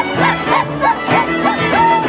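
Andean folk music on violins and a harp, the violin playing a quick run of short high notes, each sliding up and falling away, about four a second.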